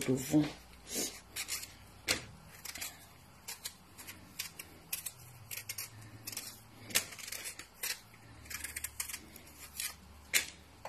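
Irregular clicks, taps and short rustles of kitchen items being handled, some coming in quick runs, over a faint low hum.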